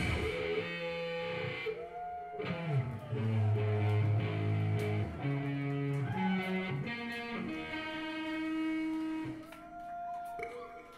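Electric guitar played live through an amplifier without the full band: sustained ringing chords and notes changing every second or so, with a few sliding notes between them. It dies away near the end.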